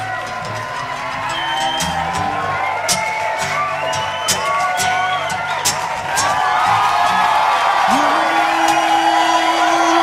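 Acoustic guitar playing the instrumental intro of a folk song, with a crowd's voices and cheers over it. It grows louder about six seconds in.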